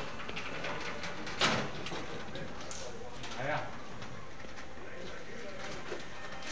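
Aluminum sliding window panel being handled into its frame: a sharp clack about a second and a half in, then a softer knock around the middle.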